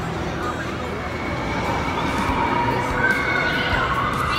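People screaming on an amusement ride: several high, wavering shrieks that grow stronger in the second half, over the hubbub of a crowd.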